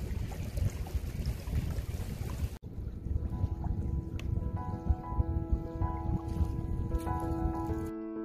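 Wind buffeting the microphone, a dense low rumble. A little under three seconds in the sound cuts abruptly, and soft piano music with held notes comes in over the continuing wind noise.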